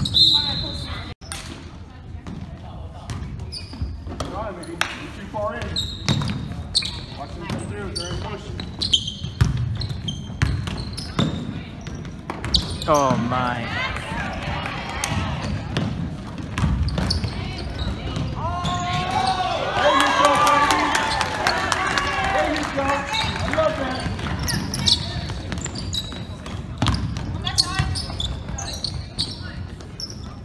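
Basketball bouncing on a hardwood gym floor, with short sneaker squeaks and the voices of players and spectators echoing in the hall; the voices swell about two-thirds of the way through.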